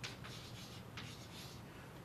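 Chalk scratching on a chalkboard as someone writes: a few faint, short strokes.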